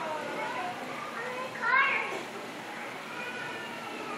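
High-pitched children's voices chattering, with one child calling out sharply about two seconds in, over a steady background hubbub.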